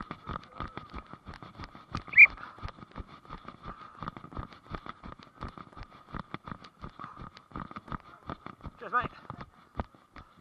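Footfalls of a person running on grass, picked up by a body-worn camera as a rapid run of thuds, about four to five a second. A brief high squeak or call about two seconds in is the loudest sound, and a distant shout comes near the end.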